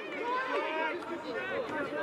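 Speech only: voices talking, with nothing else clearly standing out.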